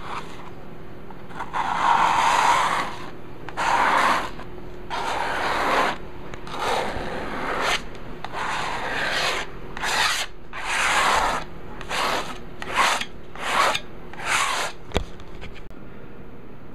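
Golden acrylic paste being scraped and spread across a taut stretched canvas with a hand-held spreader, in about a dozen rubbing strokes that come shorter and quicker toward the end, with a single sharp click near the end.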